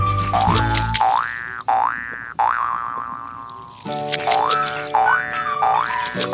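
Children's background music laid over the scene, with a cartoon sound effect of short rising pitch swoops repeated several times. The low bass drops out for about three seconds in the middle and then returns.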